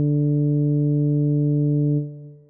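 Computer-rendered tuba playback holding one long, steady low note, a dotted half note played at half speed, which dies away at the end.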